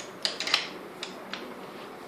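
Small clicks and light metal taps as a screw is fitted into a telescope's alt-azimuth mount: a quick cluster of clicks in the first half second, then two single ticks.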